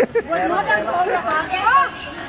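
People chattering, several voices talking at once.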